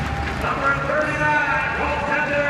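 Arena public-address announcer's voice, drawn out and echoing, coming in about half a second in over steady crowd noise.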